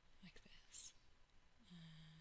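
Near silence apart from a person's faint, whispered vocal sounds: a short breathy murmur, then a low hummed "mm" held near the end.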